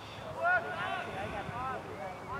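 Short, high-pitched shouts from players on a soccer field, about three brief calls with no clear words, over a low outdoor rumble.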